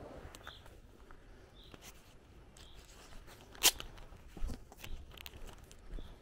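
Footsteps on a rural path start about two-thirds of the way through, right after a single sharp crack. A small bird chirps briefly about once a second in the first half.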